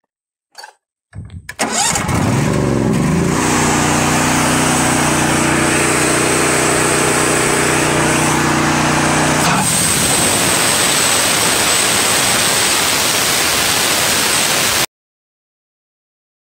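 TimberKing 1220 bandsaw mill's engine starting, rising in pitch and settling into a steady run. About ten seconds in, the sound changes to an even rushing noise with a thin high whine, and it cuts off abruptly near the end.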